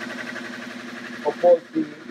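Electric motor turning a homemade magnet-and-coil generator through a strap belt, running steadily with a constant hum while the generator lights lamps under load.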